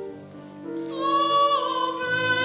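Classical female voice singing: after a brief softer moment, a high note held with vibrato comes in about a second in, then slides down.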